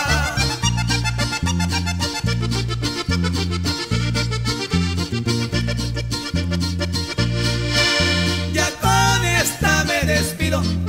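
Norteño corrido instrumental break: accordion playing the melody over a steady, evenly paced bass line of about two notes a second.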